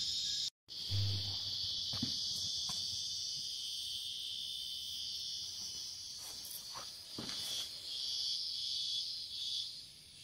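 Steady, high-pitched chorus of shrilling insects, with a brief dropout just after the start and a few faint knocks.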